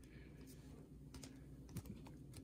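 Faint light clicks and slides of glossy trading cards being flipped through by hand, one card moved behind the next, with the clearest click near the end.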